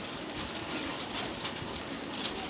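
Pages of a book or sheets of paper being handled and turned at a podium, with light rustles. Faint short low calls sound in the background.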